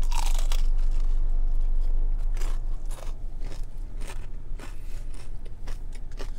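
A crunchy bite into crispy fried chicken skin, then steady crisp chewing, about two crunches a second, close to the mouth.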